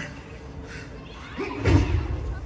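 A fairly quiet stretch, then about one and a half seconds in a loud low thud with a man's voice over it.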